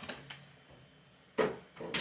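Two short knocks, one about a second and a half in and a louder one near the end, against quiet room tone.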